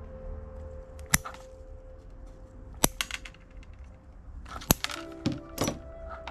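Bonsai scissors snipping ivy stems: three sharp snips spaced a little under two seconds apart, with softer clicks between and near the end, over quiet background music.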